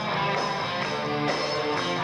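Live rock band playing: electric guitar and held keyboard notes over drums, with a beat of about two strokes a second.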